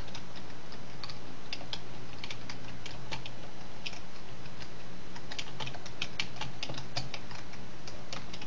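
Computer keyboard typing: irregular clicking keystrokes as a file name is typed, over a steady low hum.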